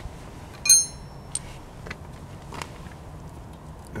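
A single sharp metallic clink with a short bright ring about a second in, followed by a few faint clicks, as small metal parts from the unicycle crank and hub are handled.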